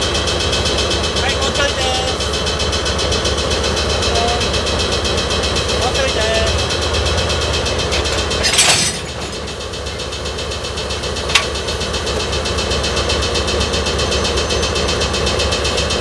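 JNR DE10 diesel-hydraulic locomotive's engine running steadily as it closes up slowly on a coach to couple. About nine seconds in there is a half-second burst of noise as the two meet, after which the engine runs a little quieter, and a single sharp clank follows a couple of seconds later.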